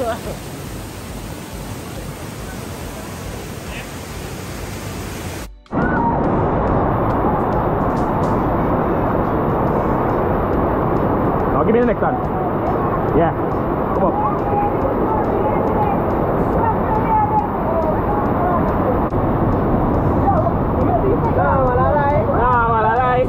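Waterfall water pouring and splashing close to the microphone. About five and a half seconds in it cuts abruptly to a louder, more muffled rush of river water over rocks, with voices over it near the end.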